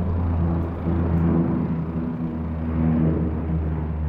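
Steady low drone of a twin-engine propeller water bomber flying overhead, its engine hum swelling a little about a second in and again near three seconds.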